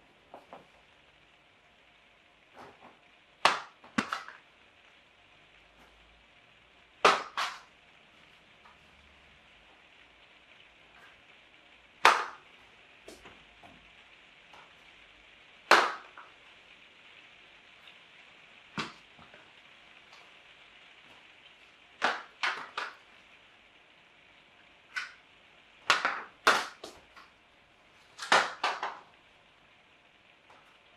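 Light, sharp taps and clicks at irregular intervals, about fifteen in all and several in close pairs, over a faint steady hiss.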